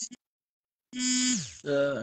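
Speech over a video call: after a brief stretch of dead silence, a voice comes back in about a second in with a drawn-out, falling syllable, followed by more talk.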